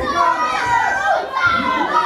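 Several voices shouting over one another: corner coaches and spectators calling instructions in Dutch to two young kickboxers during the fight.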